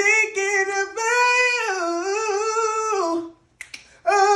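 A boy's voice singing a cappella, a wordless run of long held notes that bend up and down, stopping about three seconds in. A couple of short sharp clicks follow near the end.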